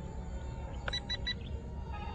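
Three short, evenly spaced electronic beeps about a second in, typical of a handheld RC transmitter's switch or trim beeps, over a low wind rumble on the microphone.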